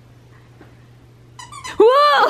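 Quiet room hum, then near the end a puppy gives a short whine that rises and falls in pitch.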